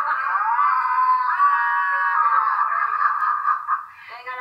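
A woman's loud, high-pitched, drawn-out squealing laugh, held for several seconds with a wavering pitch and fading near the end.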